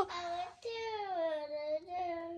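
A toddler singing in a small voice: a short sung bit, then one long drawn-out note that slides slowly down in pitch.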